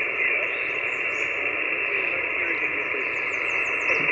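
Amateur radio receiver on the 20-meter band hissing steadily with band noise through a narrow voice passband: the calling station is too weak to be heard on the hamstick antenna.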